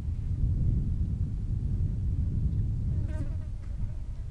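Flies buzzing close to the microphone: a low, wavering buzz throughout. A brief higher-pitched sound comes about three seconds in.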